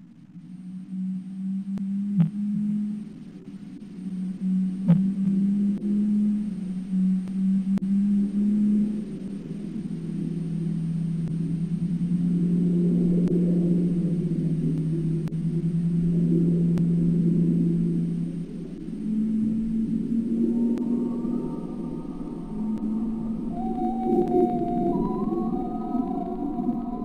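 Ambient underwater soundscape of long, low, whale-like tones that hold and then shift in pitch. Two brief clicks come at about two and five seconds in, and higher gliding tones join about twenty seconds in.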